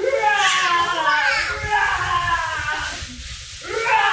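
People laughing and squealing in high-pitched voices, with a brief break about three seconds in.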